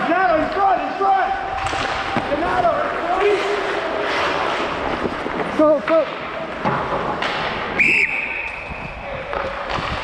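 Ice-rink play with players shouting and skates scraping on the ice, then about eight seconds in a referee's whistle blows one long, steady blast lasting about two seconds.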